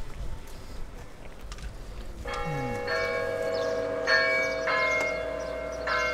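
Church bells ringing from a stone bell tower, starting about two seconds in: several strikes, each leaving long, overlapping ringing tones.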